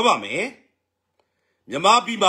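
A man speaking, with a pause of about a second in the middle.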